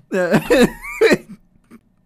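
A person laughing in about three short, breathy bursts that stop a little past halfway.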